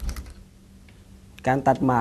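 A quick cluster of sharp clicks with a low thump at the start, then a man's voice speaking Thai near the end.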